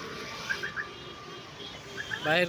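A bird chirping three quick short notes about half a second in, over a steady outdoor background noise.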